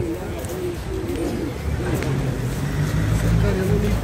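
Street noise: a steady low engine hum from a nearby vehicle, growing stronger about halfway through, with faint voices of passers-by.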